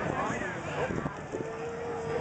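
A sheep bleats once, a single long call that starts past the middle, over the chatter of a crowd.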